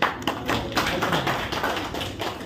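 Hand clapping: a quick, irregular run of claps that begins right at the start and dies away just after.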